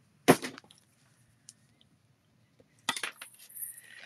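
Clear plastic stamp-set cases handled on a desk: one sharp clack about a third of a second in as a case is set down, then clicking and scraping of plastic near the end as the next case is picked up from a stack.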